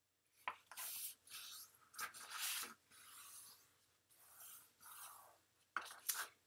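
Cardstock folded in half being pressed and smoothed flat by hand to crease the fold: a faint series of papery rubbing swipes, about six of them, with a few light ticks of paper against the cutting mat.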